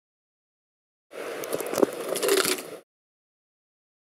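A short burst of noise with crackles and one sharp click, cut in and out abruptly and lasting under two seconds: a cup of near-boiling water being flung into the air in bitter cold.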